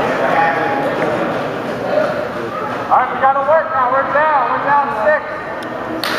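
Many overlapping voices echoing in a gym hall. From about three seconds in, one voice stands out, shouting in rising and falling calls for about two seconds.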